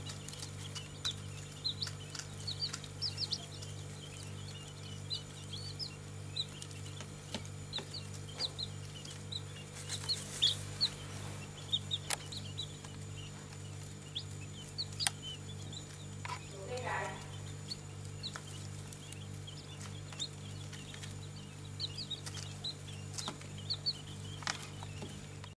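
Brood of newly hatched Japanese quail chicks, with a few chicken chicks among them, peeping continually in many short, high cheeps over a steady low hum.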